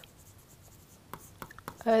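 A pen writing: faint scratching strokes, with a few light taps of the pen tip in the second half.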